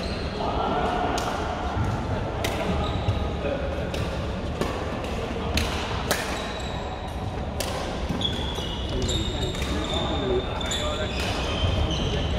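Badminton rally: sharp cracks of rackets striking the shuttlecock, a second or so apart, echoing in a large indoor hall over background voices.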